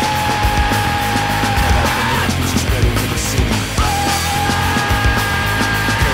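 Hardcore crossover band playing: heavy distorted guitars, bass and hard-hit drums. A long held high note sounds over it and ends about two seconds in, and a second one comes in shortly before four seconds.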